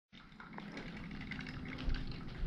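Room tone with a steady low hum and scattered faint ticks; near the end, a low thump as the camera is picked up and moved.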